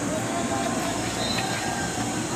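Steady outdoor background noise with faint distant voices over it.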